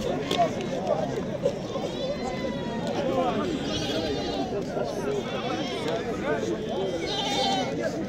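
Goats bleating several times, with people talking in the background.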